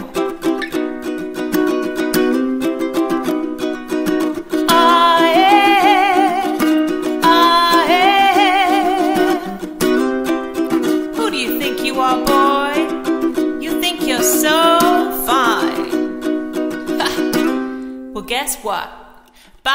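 Ukulele strummed in a Latin-style rhythm, with a woman's voice singing a wavering melody over it for long stretches.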